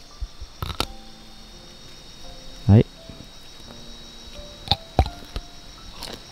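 Crickets chirring steadily, with a few short sharp clicks about a second in and near five seconds in, and one brief rising sound near the middle.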